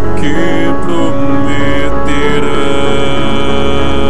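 Music from a gothic song, an instrumental passage of many held tones over a steady low tone.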